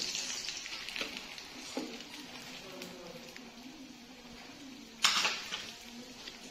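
Chicken-potato cutlets sizzling as they fry in hot oil in a pan, with light clicks of a wire skimmer lifting the cooked ones out. There is a sharp knock about five seconds in.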